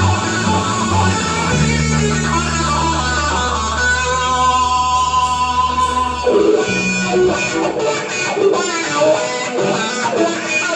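Live rock band playing an instrumental passage with electric guitars and drums, with no singing. A low note and chord ring out long, break off about six seconds in, and the playing then turns choppier with drum hits.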